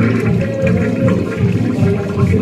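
1994 Corona toilet flushing: water rushing and swirling down through the bowl.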